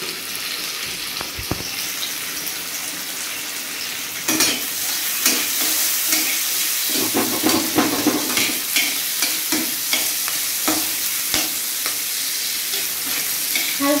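Chopped onion and capsicum sizzling in oil in a black kadai, with a metal spatula stirring and scraping against the pan from about four seconds in, when the sizzle also gets louder.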